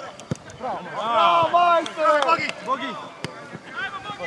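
Footballers shouting calls to one another across the pitch, in loud voices that overlap. A sharp thud of the ball being kicked comes just after the start and another about three seconds in.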